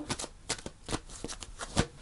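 Angel romance oracle cards being shuffled by hand: a run of quick, irregular card snaps and flicks, with a louder snap near the end as cards jump out of the deck.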